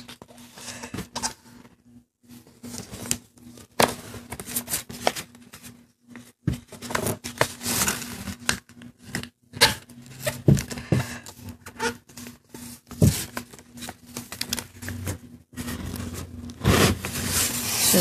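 A sheet of paper being folded and creased by hand: irregular rustling and crinkling with scattered sharp crackles, louder in the last couple of seconds.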